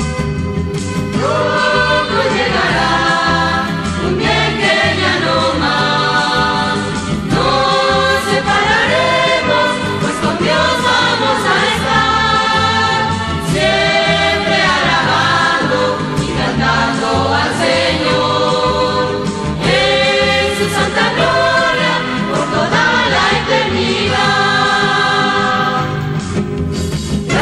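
A church choir group singing a Spanish-language Christian hymn in several voices together, over a band accompaniment with a steady beat; the voices come in about a second in after a short instrumental passage.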